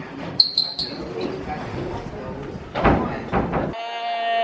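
Voices echoing in a school hallway, with a few short, high sneaker squeaks on the polished floor about half a second in.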